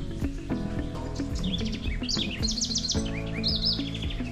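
A bird singing a series of quick, high chirping whistles, strongest in the second half, over background music with steady held notes.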